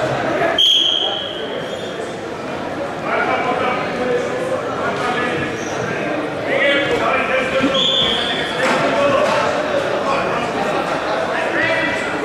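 A referee's whistle blows once, briefly, about half a second in, the signal that starts the wrestling bout; a second whistle sounds about eight seconds in. People call out and talk throughout.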